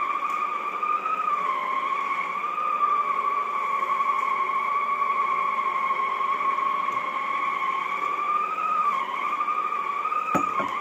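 Shark Sonic Duo floor cleaner running with its polishing pad on a hardwood floor: a steady high motor whine that dips slightly in pitch a couple of times.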